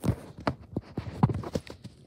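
A quick, irregular run of about ten knocks and taps.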